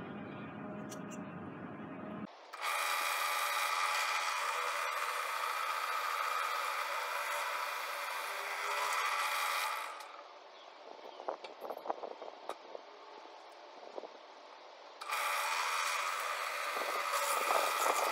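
Benchtop drill press running, its quarter-inch bit boring a hole in a small block of wood: two stretches of steady motor and cutting noise, the first a few seconds in and the second near the end, with a quieter spell of scraping and handling between them.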